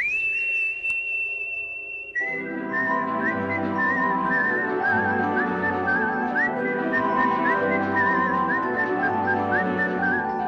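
A tune whistled over instrumental backing music: a single high whistled note is held for about two seconds, then the backing comes in and the whistled melody goes on with slides and wavers between notes.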